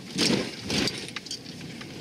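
Inside a moving car: road and engine noise, with a louder noisy patch in the first second and a few light clinks or rattles.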